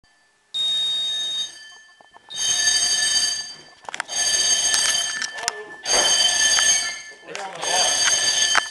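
Ceiling smoke detector sounding in about five long, high-pitched beeps of roughly a second each, with short gaps between them. It was set off by cooking, with no actual fire.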